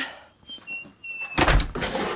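A brief high squeak, then a door shutting with a thud about one and a half seconds in.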